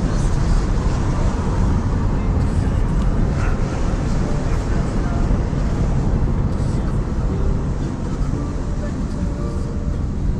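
Steady engine and tyre noise heard from inside a moving car's cabin: a deep, even rumble with no sudden events.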